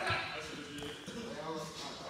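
Indistinct voices talking in a large, echoing gym, with a few soft thuds on the wrestling mat.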